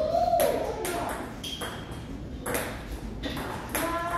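Table tennis ball clicking off paddles and the table in a rally: a series of sharp hits about half a second apart, with a pause of about a second in the middle.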